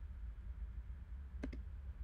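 A single short click, typical of a computer input click, about one and a half seconds in, over a low steady hum.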